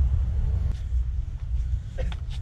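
Wind buffeting the microphone: a steady low rumble that rises and falls.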